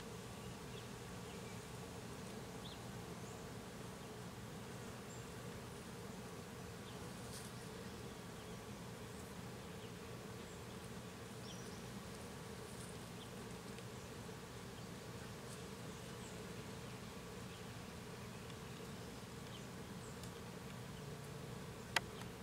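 A steady low buzzing drone, unchanging throughout, with faint short high chirps scattered through it.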